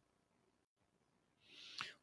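Near silence: faint room tone in a pause between spoken sentences, with a brief dead dropout partway through.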